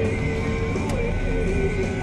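Music playing from a car stereo inside a moving car, over a steady low rumble of engine and road noise.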